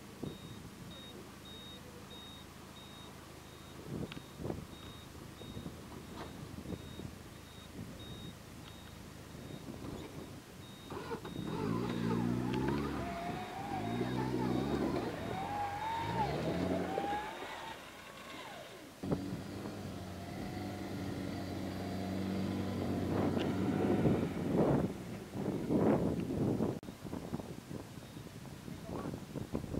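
Off-road 4x4's engine running at low revs as it crawls through a gully. From about eleven seconds in it is revved up and down several times in quick succession, then settles back to a steadier run. Louder revs with a few sharp knocks come near the end.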